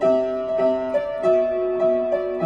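Piano played in simple chords, a new chord struck about every half second over a steady upper note.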